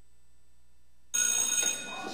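After a quiet first second, an electric bell of the kind used as a school bell rings suddenly and loudly for about half a second, then fades.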